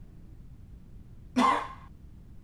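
A man coughs once, sharply, about one and a half seconds in.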